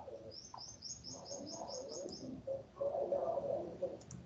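A bird chirping: a quick run of about ten short, high chirps, about five a second, that stops about two seconds in.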